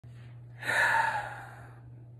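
A man's single heavy breath, rising about half a second in and fading away over about a second.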